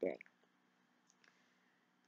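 A spoken word ends at the start, then near silence: room tone with a faint steady hum and a few very faint clicks.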